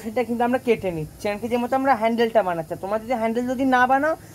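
A woman talking continuously in Bengali; only speech is heard.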